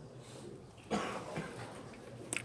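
A single cough about a second in, followed by a quieter second burst, over a low steady room hum.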